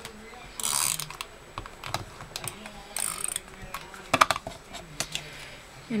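Hand-held adhesive tape runner drawn across the back of a paper circle: short rasping strokes as the tape is laid, about a second in and again about three seconds in, with clicks of the runner's mechanism and paper handling. The loudest sound is a quick cluster of sharp clicks just after four seconds.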